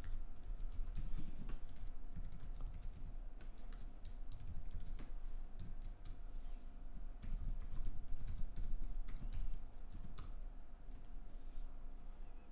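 Typing on a computer keyboard: an irregular run of keystrokes, with a quicker flurry in the second half.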